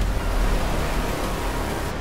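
Explosion sound effect for an animated logo: a loud, dense rush of noise with a deep low end that fades slowly, its hiss dropping away near the end.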